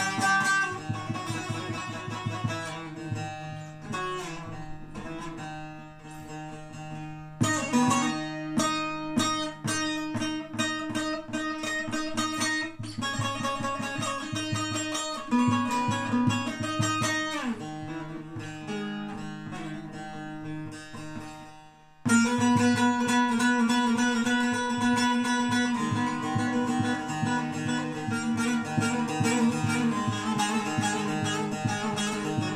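Long-necked bağlama (Turkish saz) played solo, strummed and picked in a quick melody over a steady low note: the instrumental introduction before the singing. The playing fades briefly and comes back louder about two-thirds of the way through.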